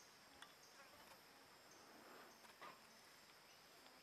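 Near silence: a faint steady high-pitched hum with a few faint ticks, in a pause between music pieces.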